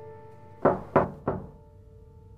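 Three knocks by hand on a wooden panelled door, about a third of a second apart, the last one softer, over soft background piano music.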